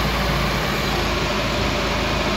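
Carbureted car engine idling steadily while its idle mixture screw is turned in from the rich side, toward the setting that gives maximum manifold vacuum.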